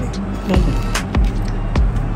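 Background music with a steady beat, about two beats a second over a continuous low bass.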